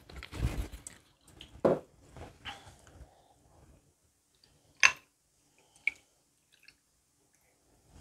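Cocktail glassware being handled at a counter: a few soft knocks, then one sharp glass clink about five seconds in as a small glass measure of whisky liqueur is emptied over ice in a tumbler, and a fainter click a second later.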